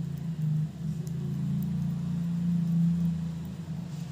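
A steady low hum that swells to its loudest a little past the middle, with faint light ticks from metal knitting needles working yarn.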